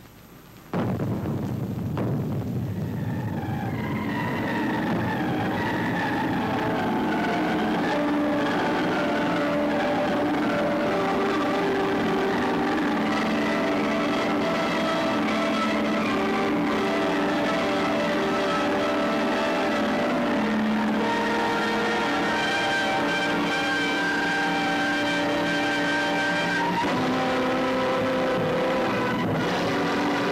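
Film soundtrack: a sudden loud crash about a second in, with a rumble that dies away over the next few seconds, then music of long held, layered chords that carries on at a steady level.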